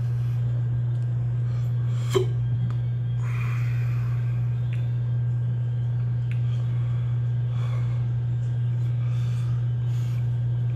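A steady low hum throughout, with one short sharp click or knock about two seconds in and faint rustling as a hot sauce bottle is handled.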